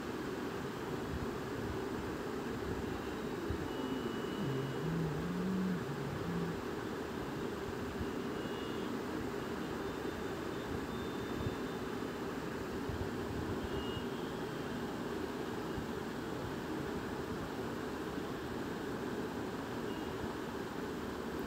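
Steady low background noise, like a fan or distant traffic, with no speech.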